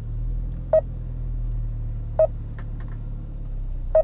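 Car's electric fuel pump ticking three times at irregular intervals of about a second and a half, each a sharp click with a short ringing tone, over a steady low engine hum. The driver calls it getting noisy.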